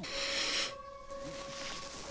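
A woman's short breathy laugh, over a steady held note from the TV episode's music score that runs on past the end.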